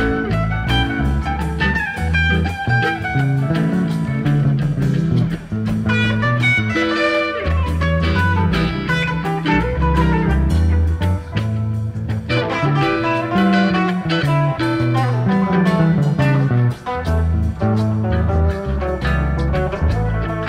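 Live psychedelic rock instrumental jam: electric guitar lines winding over a moving bass guitar and drums, with no singing.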